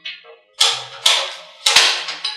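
Four sharp clicks and clatters of hard objects being handled and set down, spaced unevenly about half a second apart.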